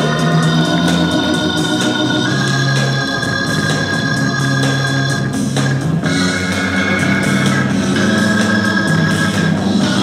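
Music played by a DJ from turntables: a record with long held organ chords that change every few seconds.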